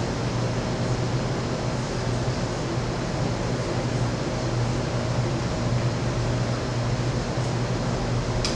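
Steady low mechanical hum and hiss of room background noise, unchanging and without distinct events.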